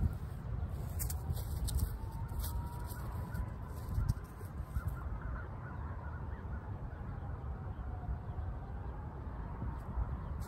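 Wind rumbling on the microphone outdoors, with a faint, long, slightly wavering tone in the background that rises and falls over several seconds.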